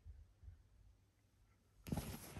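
Quiet room hum for most of the time. Near the end comes a sharp click followed by soft rustling handling noise.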